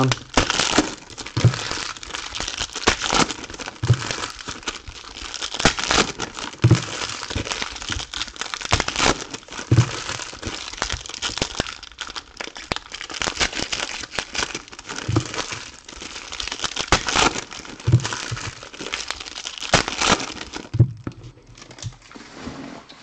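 Foil wrappers of basketball trading-card packs being torn open and crumpled by hand, a continuous crackling crinkle with soft low knocks every few seconds.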